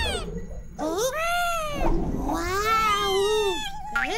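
High-pitched, non-verbal cartoon bird character voices: a short falling cry at the start, then two long wailing cries whose pitch rises and falls, the second about a second and a half long.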